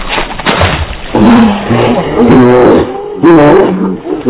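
An animal calling loudly about four times in a row, each call bending up and down in pitch, after a second of noise with a few clicks.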